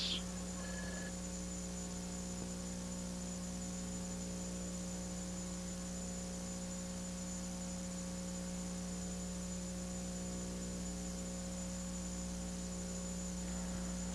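Steady electrical mains hum, a constant low hum with fainter higher overtones, unchanging throughout.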